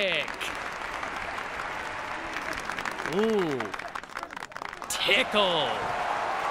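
A mezzo-soprano sings the short 'i' vowel in operatic swoops that rise and fall in pitch, once about 3 s in and again about 5 s in. Applause goes on underneath throughout.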